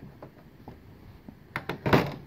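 Brother knitting machine ribber being lowered: a few faint clicks, then a quick cluster of sharp metal clicks and clunks near the end.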